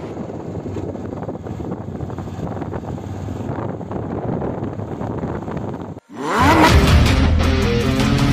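Single-cylinder TVS Apache RTR 160 motorcycle running while ridden at low speed, with road and wind noise. It cuts off suddenly about six seconds in, and loud intro music with a deep hit takes over.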